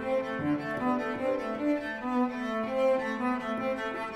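Background instrumental music, a melody of sustained pitched notes that change every half second or so.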